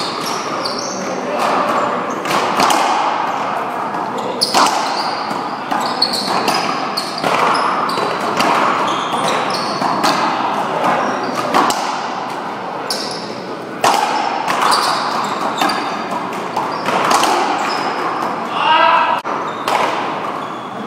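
One-wall racquetball rally: sharp cracks of racquets striking the ball and the ball smacking the wall and floor, many times at irregular intervals, echoing in a large hall, with voices in the background.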